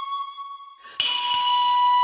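Shakuhachi flute music: a long held note with breathy air noise fades out just before a second in. After a brief gap a new, slightly lower note starts sharply and is held steady.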